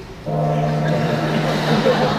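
A low, steady horn blast, like a foghorn sound effect: one held tone that starts suddenly and does not change in pitch.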